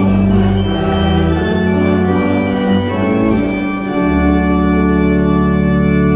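Organ playing a hymn in slow, sustained chords, ending on a long held chord over the last two seconds.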